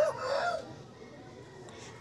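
The tail end of a rooster's crow, a pitched call that bends and fades out in the first half-second.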